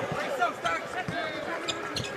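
A basketball being dribbled on a hardwood court, several bounces in a row.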